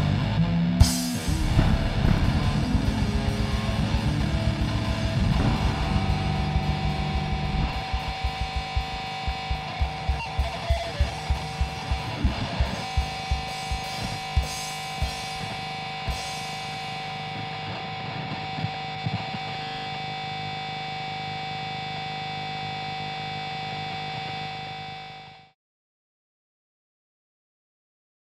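Live rock band with distorted electric guitar playing through stage amplifiers at a song's ending: the full band, then repeated drum hits that thin out, then a steady held ringing tone. The sound cuts off suddenly near the end.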